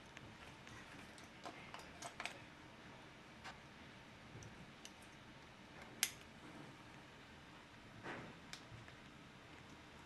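Faint clicks and cloth rustle of flight gear being fastened by hand, harness fittings and buckles snapping, with one sharper click about six seconds in.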